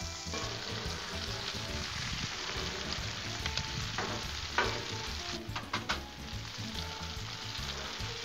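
Breaded shrimp shallow-frying in oil on a Blackstone griddle, a steady sizzle. Around the middle, a few short scrapes and clicks of a metal spatula on the griddle plate as the shrimp are lifted.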